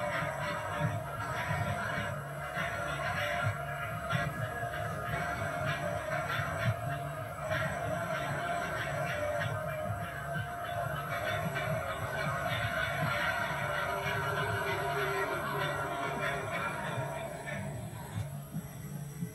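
Music from a television playing a film's opening studio logos, picked up from the TV's speaker across the room.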